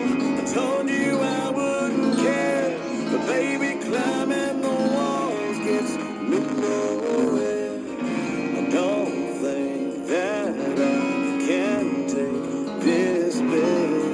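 A small-bodied acoustic guitar being played, with a man's voice singing along in a melody that bends and slides.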